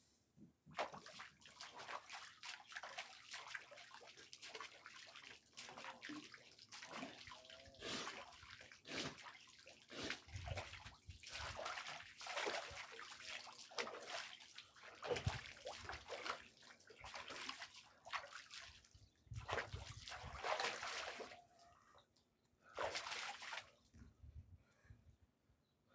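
Hands scooping water from a pool and splashing it onto a face, again and again: irregular splashes and trickles of water falling back into the pool, with a short pause near the end before one last splash.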